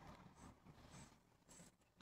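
Near silence, with a few faint soft ticks and rustles.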